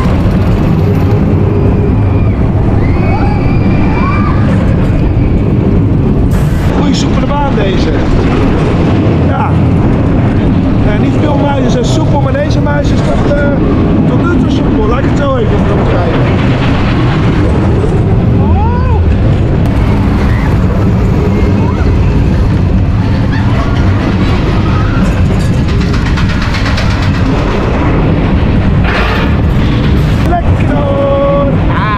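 Spinning wild mouse coaster car running along its steel track: a loud, steady rumble with short rising and falling squeals above it.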